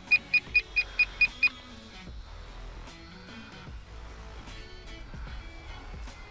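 A radio-control transmitter beeping rapidly, about four or five identical short high beeps a second, stopping about a second and a half in. Faint background music follows.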